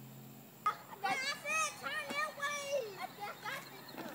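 Children's high-pitched voices calling out and shouting for about three seconds, starting just after a sharp click about two-thirds of a second in.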